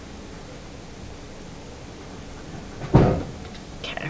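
Steady faint hiss, then a single sharp thump about three seconds in, followed by a couple of light clicks just before the end.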